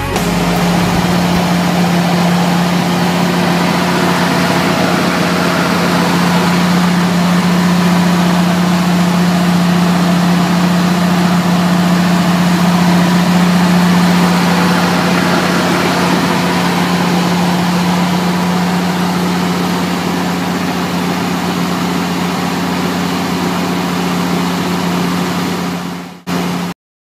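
Old Ford pickup's engine idling steadily, heard close up at the open hood.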